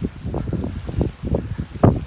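Wind buffeting a phone's microphone in uneven low gusts, the strongest one near the end.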